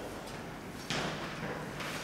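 Quiet hall room tone in a pause between speech. About a second in there is a sudden short knock that trails off in a brief hiss of noise.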